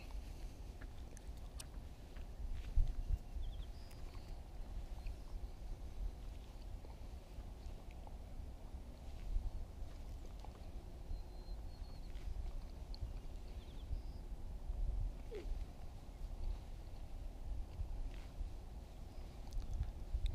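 Faint rustling and small clicks of gloved hands tying a knot in fishing line, over a low, uneven wind rumble on the microphone.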